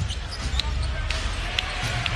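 Basketball game sound in an arena: a basketball dribbled on the hardwood court, heard as a few short sharp knocks over steady crowd noise.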